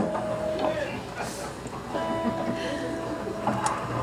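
Low background murmur of a bar audience between songs, with a couple of faint sustained instrument notes: one in the first second and two together in the second half.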